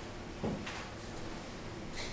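A faint knock about half a second in, then quiet room tone.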